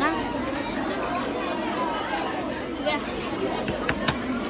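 Background chatter of many people talking at once in a large hall, with a single sharp click just before the end.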